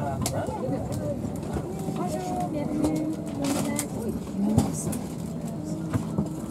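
Indistinct chatter of several passengers' voices inside an airliner cabin, over a steady cabin hum, with a few light clicks.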